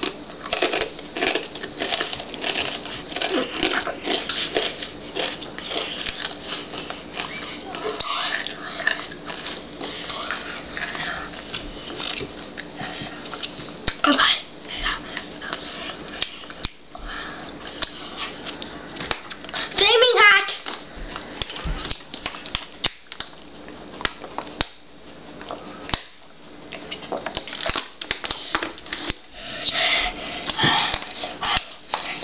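A child crunching and chewing Takis rolled corn tortilla chips, a run of short crackles, mixed with mumbled child vocal sounds. About two-thirds of the way through comes one loud, wavering vocal cry.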